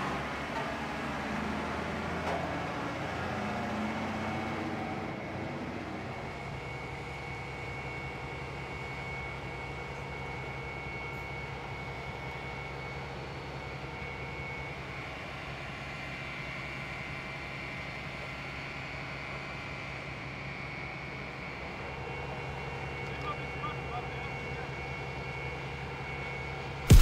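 Fire engines running with a steady low engine hum and a faint high whine, with indistinct voices in the first few seconds.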